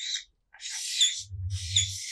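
Felt-tip marker scratching and squeaking on flip-chart paper as letters are written, in several short strokes.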